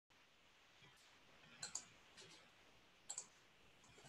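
Near silence broken by a few sharp clicks from a computer desk: a quick pair about one and a half seconds in, a softer one just after, and another pair about three seconds in.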